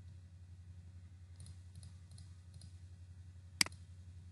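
A single sharp computer-mouse click about three and a half seconds in, over a steady low electrical hum, with a few faint soft ticks in the second before it.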